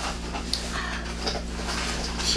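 Soft rustling of hanbok fabric and quiet breathing as a seated elderly woman settles her skirt, over a steady low room hum.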